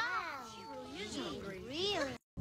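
A cat meowing several times in a row, drawn-out calls that rise and fall in pitch.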